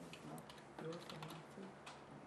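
Faint, irregular keystrokes on a computer keyboard, with a sharper key click near the end.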